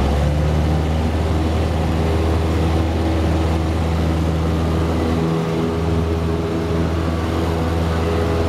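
Single-engine light aircraft's piston engine and propeller at takeoff power, heard inside the cockpit as a steady, loud drone, during the takeoff roll of a touch-and-go just after flaps up and carb heat off.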